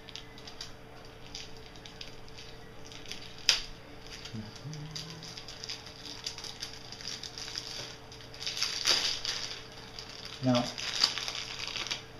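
Plastic packaging crinkling and rustling as a small camera accessory is unwrapped by hand, with one sharp click about three and a half seconds in and louder rustling near the end.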